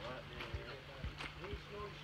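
Faint, indistinct voices of several people talking in the background, with a few light clicks and knocks.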